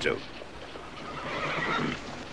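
A horse whinnying in the background, swelling from about a second in.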